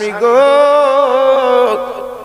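A man's voice singing one long held note in a preacher's melodic sermon delivery, amplified through a microphone. The note rises slightly at first, then holds steady for about a second and a half before breaking off.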